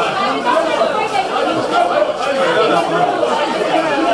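Crowd chatter: many voices talking over one another at once, none of the words clear, steady and loud throughout.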